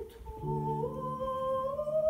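Soprano singing an operatic aria with grand piano accompaniment. She holds a long sung line that climbs slowly in pitch, over a low piano chord struck about half a second in and held.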